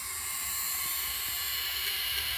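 Miniature buzz coil on a scale Olds hit-and-miss model engine buzzing steadily with its points closed, a high, hissing buzz. This is the sound of a correctly adjusted coil sending spark to the plug.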